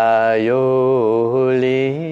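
One man chanting a mantra in long, drawn-out sung syllables. The pitch stays low and steady while the vowels change, and steps up near the end.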